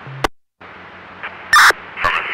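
Police scanner radio between transmissions: a click as one transmission cuts off, a moment of dead silence, then steady static hiss with one short loud squawk of noise about one and a half seconds in.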